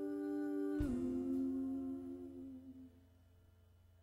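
Live band music: a held chord, then a new lower chord struck about a second in that rings out and fades away, leaving near quiet for the last second.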